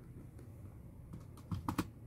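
Faint room noise, then a quick run of light plastic clicks and taps near the end: a CD jewel case knocking against other shelved cases as it is slotted back onto a shelf.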